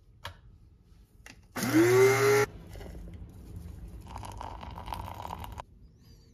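Electric blade coffee grinder run in one short burst of under a second, about a second and a half in: the motor's whine rises quickly as it spins up, then holds and cuts off. After it come a few seconds of softer, hissy sound.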